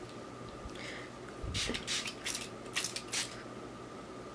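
Handling sounds from a reborn baby doll being moved in hands on a fabric blanket: a soft low bump about a second and a half in, then a quick run of about seven short, crisp rustles.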